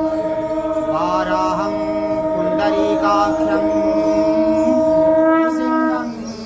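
Devotional chanting over a steady held drone, which breaks off briefly near the end.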